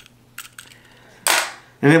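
A few faint clicks, then a single short, sharp clatter of a small hard object on a table about a second in.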